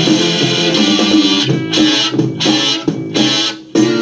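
Psychedelic rock recording playing: a full band in thick sounds with stop-start choppiness, breaking off briefly several times.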